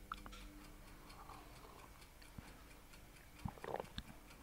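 Quiet room tone with a faint, regular ticking, like a clock, and a few soft clicks near the end.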